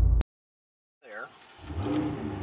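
Music cuts off abruptly, followed by a short silence. About a second and a half in, the twin-turbo V8 of a Ferrari GTC4Lusso T starts to be heard from inside the cabin, running with a low steady hum. A brief sweeping sound comes just before the engine.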